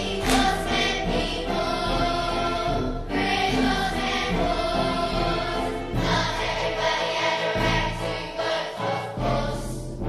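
Music: a choir singing sustained chords over instrumental accompaniment.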